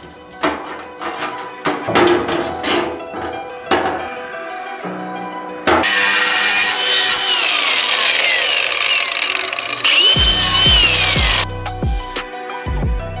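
Milwaukee angle grinder cutting into the metal of a fuel pump hanger, starting about halfway through, its whine dipping and recovering as the disc is loaded, then stopping near the end. Before it, metal parts knock and clink as they are handled.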